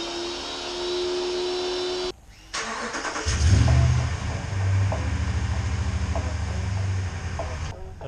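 A small motor whines steadily at one pitch and cuts off suddenly about two seconds in. After a short pause, a pickup truck's engine starts about three seconds in, swells briefly, then settles into a steady idle.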